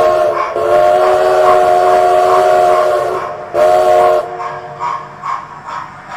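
Multi-chime steam locomotive whistle sounding several notes at once: one blast ends just after the start, then a long blast of nearly three seconds and a short one. Softer rhythmic locomotive chuffing follows near the end.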